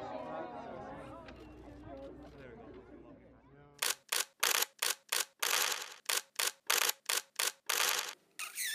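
Crowd voices fading out, then, about four seconds in, a rapid run of camera shutter clicks, about three a second, with one longer burst in the middle.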